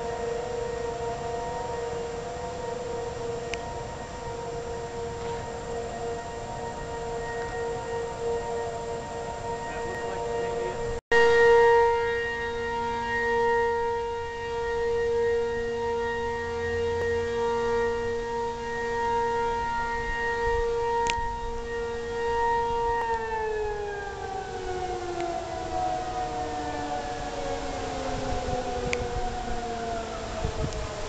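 Outdoor civil-defense warning siren sounding a steady tone for a tornado warning, swelling and fading slightly in loudness. There is a short break about a third of the way in, after which it is louder. Near the end it winds down, its pitch sliding slowly lower.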